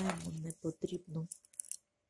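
A woman speaking: talk that the transcript did not write down.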